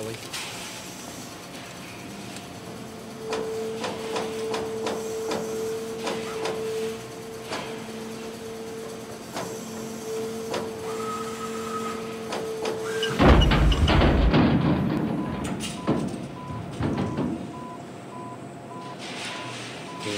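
New Italian CNC turret punch press running: a steady hum with a quick run of clicks and clacks as the punching carriage works. About 13 seconds in comes a sudden loud crash and rumble, the machine breaking down.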